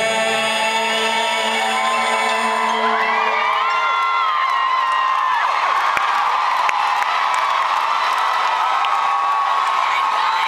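A held chord from the band fades away over the first few seconds, and a concert crowd cheers and whoops, many high voices holding on until the band starts up again.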